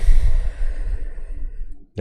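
A man's long sigh breathed out close to the microphone, the breath blowing on it; loudest at the start, then tailing off.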